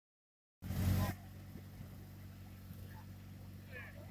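Mitsubishi Galant VR-4 rally car's engine idling steadily with a low, even note, after a short louder burst about half a second in.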